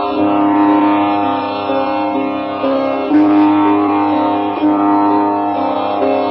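Sitar playing a slow melody in Indian classical style, with a new plucked note every second or two, each ringing on.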